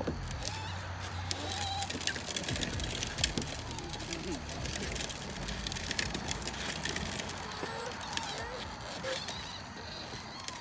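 Hard plastic wheels of a Little Tikes Cozy Coupe ride-on toy car crackling and rattling over rough asphalt as it is pushed along, with faint voices in the background.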